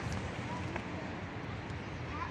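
Steady outdoor street ambience with faint, brief children's voices calling out a couple of times in the first second.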